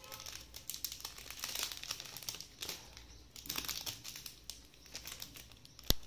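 Plastic packaging crinkling and rustling as it is handled, with many small irregular clicks and one sharp click near the end.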